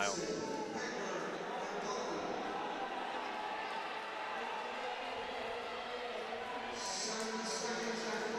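Steady crowd murmur and ambience of a large indoor track arena, with faint indistinct voices in the hall.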